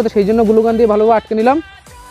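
A person's voice in long, wavering sung notes, stopping about one and a half seconds in.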